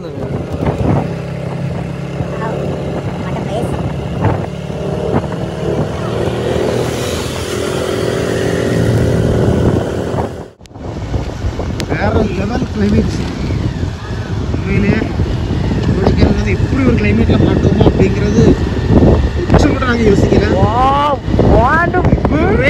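A steady low hum under voices cuts off sharply about halfway through. Then a motorcycle is ridden along a road, its engine running under voices and growing louder toward the end.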